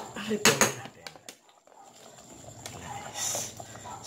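Kitchen handling sounds as cabbage is added by hand to a pot of lomi: a few sharp clicks in the first second, then a soft rustle about three seconds in.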